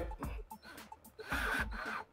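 Background music with a steady beat. In the second half a cordless drill runs briefly, driving a screw into the motion detector's plastic back plate.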